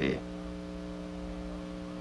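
Steady electrical mains hum in the soundtrack, an unchanging buzzy tone with several overtones, heard in a gap in the narration.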